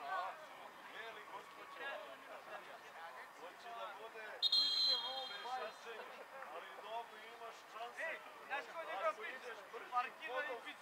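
Players' voices calling out across the pitch, with one short referee's whistle blast about four and a half seconds in, the loudest sound here.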